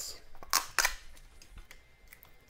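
Plastic seal on a blue 'Candy Ice Cream' candy tube being pulled open by hand: two short crinkling rips, about half a second and just under a second in, with a few light clicks of handled plastic.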